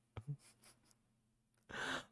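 Mostly near silence, with two faint brief sounds early on and, near the end, a man's audible breathy exhale.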